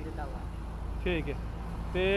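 Short fragments of a person's voice, about a second in, over a steady low rumble.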